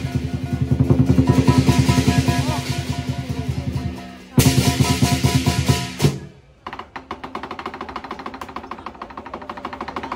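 Lion dance percussion: a large drum beaten in rapid strokes with cymbals and gong ringing over it. It dips briefly about four seconds in, comes back loud, then drops near six seconds to a quieter, fast roll.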